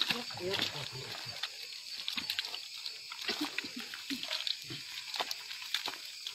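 Scattered short calls and grunt-like voice sounds from a group of people carrying a patient on foot through mud, over a hissy outdoor background with occasional clicks and sloshing.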